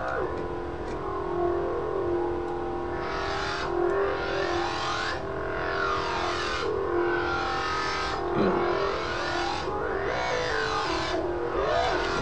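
Synth bass patch in the Native Instruments Massive software synthesizer holding a sustained note while its filter cutoff sweeps slowly up and down, the sound turning bright and then dull again several times.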